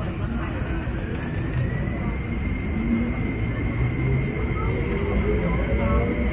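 Kinki Sharyo electric multiple-unit train pulling away from a station, heard from inside the car: the traction motor whine rises in pitch and then holds steady, and a second, lower whine climbs as the train picks up speed, over the steady rumble of the running gear.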